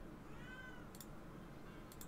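A cat meowing once, faintly, the call rising and then falling in pitch over about half a second. A couple of soft clicks follow.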